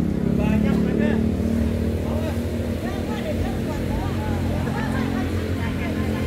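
A motor engine running steadily with an even hum, with people's voices chattering faintly over it.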